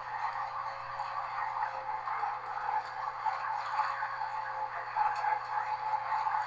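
Class 201 'Hastings' diesel-electric multiple unit heard from inside its rear cab while running: a steady hum and rumble with a faint constant tone, and a few light ticks and rattles.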